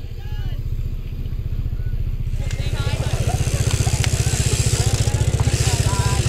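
A motorcycle engine running close by with an even, rapid low pulse, getting louder from about two seconds in, with faint voices behind it.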